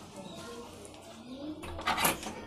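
A door's sliding barrel bolt worked by hand, with one sharp clack just before the end, over faint low background sounds.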